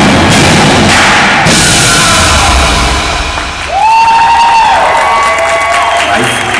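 Indoor percussion ensemble playing loud, with drums and cymbals in a dense wash for about three seconds. Then it thins out to a few long, held pitched tones from the front ensemble.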